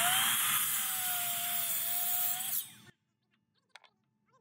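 Delta Cruzer sliding miter saw running and cutting through a wooden board, a steady motor whine over the noise of the blade in the wood. The sound cuts off suddenly about three seconds in.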